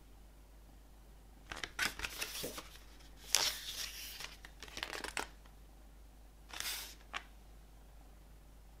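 Pages of a glossy photobook being turned by hand: four short papery swishes and flaps, the loudest about three seconds in, and a light tick near the end.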